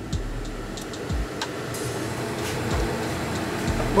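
Steady rushing noise from a pot of pork and broth cooking on a lit gas hob, with a few faint clicks.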